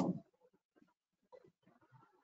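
A brief burst of noise right at the start, cutting off within a fifth of a second, then faint room tone with a few soft clicks.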